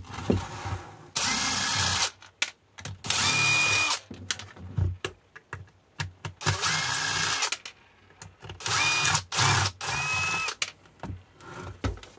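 Cordless drill-driver backing out the Phillips-head screws from the bottom of an e-bike battery case in five short bursts of about a second each, its motor whining steadily during each one. Light clicks from handling the case and the screws come between the bursts.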